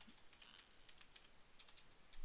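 Faint computer keyboard typing: scattered key clicks, with a quick run of keystrokes near the end.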